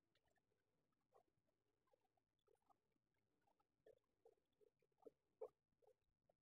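Near silence, with faint, scattered small clicks and rustles at irregular intervals.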